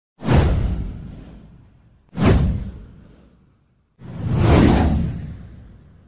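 Three whoosh sound effects, one about every two seconds. The first two hit suddenly and fade away; the third swells up over about half a second before fading.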